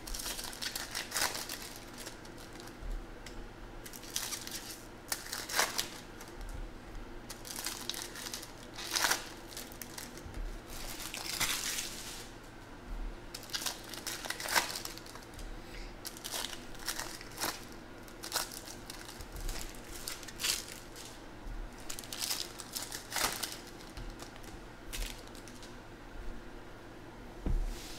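Foil trading-card pack wrappers being torn open and crinkled by hand, in irregular short bursts with a few longer rips.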